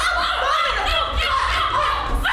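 Several voices laughing and crying out over one another, with no clear words.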